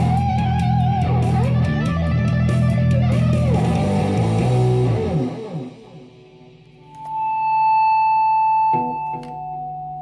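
Distorted lead electric guitar, an ESP KH-2 Vintage, playing string bends and wide vibrato over steady low notes of a heavy metal backing. About five seconds in the music drops away. A single note then swells up and is held for almost two seconds, followed by a lower sustained note.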